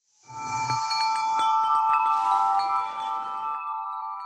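Corporate outro jingle starting out of silence: a soft swell just after the start opens into several held, bell-like chime tones with a glittering shimmer above them.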